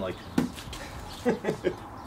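A man chuckling: three short voiced bursts in quick succession about a second in, after a single sharp click.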